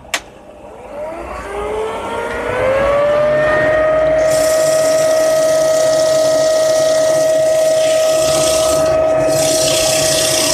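A leaf blower-vacuum, used as a dust extractor, is switched on with a click. Its motor whine rises in pitch for about three seconds and then runs steadily. From about four seconds in, sandpaper hisses against the wood turning on the lathe, with a short break near the end.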